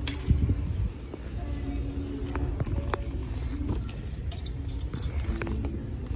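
Metal hangers and clip hangers clinking and scraping on a chrome store rack as a handbag is lifted off it, with a louder knock about a third of a second in and scattered clicks after, over a low handling rumble.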